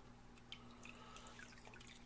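Faint dripping and trickling water from an aquarium filter's water-change spout as it is lifted to drain tank water, over a faint steady low hum.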